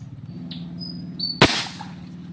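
A single sharp shot from an airgun, about one and a half seconds in, with a brief ring-out after it.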